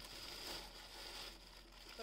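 Tissue paper rustling and crinkling as it is handled and pulled out of a package.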